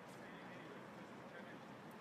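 Quiet open-air background with faint distant voices and no clear ball strikes.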